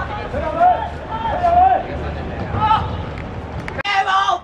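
Spectators' voices talking and calling out near the microphone, over a low steady rumble. The sound breaks off abruptly just before the end.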